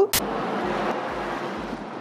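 Steady road and engine noise inside the cabin of a Toyota Land Cruiser Prado 120 with its 4.0-litre V6 while driving, fading slightly. It starts with a sharp click just after the start.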